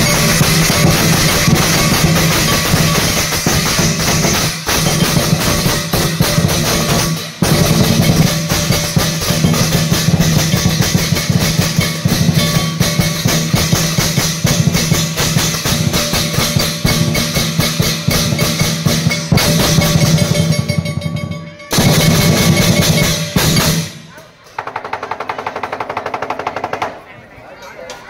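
Lion dance percussion: a big drum beaten in a fast, dense roll with crashing cymbals, loud and driving, with brief breaks about seven and twenty-one seconds in. It thins out and drops away near the end.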